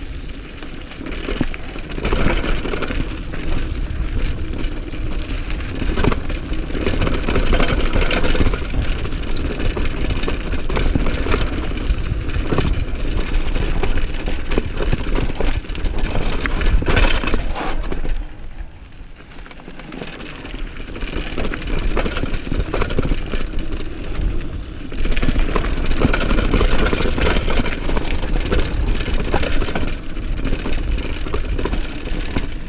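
Mountain bike descending fast on a dirt and rock trail: tyres rolling and crunching over the gravel, the bike rattling over bumps, and wind buffeting the action camera's microphone. It eases for a couple of seconds a little over halfway through, then picks up again.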